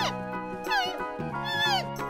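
Giant panda bleating: a run of short, high, nasal calls that rise, hold and fall in pitch, about four in two seconds, over background music with held low notes.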